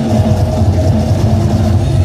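Loud hip-hop battle music from a sound system, with a heavy bass line.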